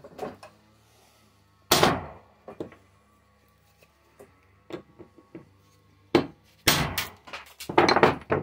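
Hammer blows on metal on a workbench, knocking apart a small part of a nebulizer's compressor: one hard strike about two seconds in, then a quick run of several strikes near the end, with light knocks and clicks between.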